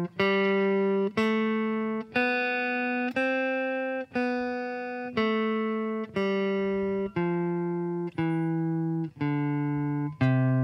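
Clean Fender Telecaster electric guitar playing the C major scale in first position, one plucked note per beat at 60 beats a minute. It climbs to the top C around the middle and steps back down, each note ringing about a second until the next.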